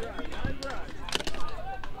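Faint, scattered voices of spectators chattering, with a few short sharp knocks.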